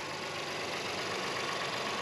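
Honda Ridgeline's 3.5-litre V6 idling with the hood open, a steady, even running sound.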